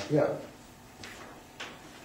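A man's brief words at the start, then quiet room tone with a short click about a second and a half in.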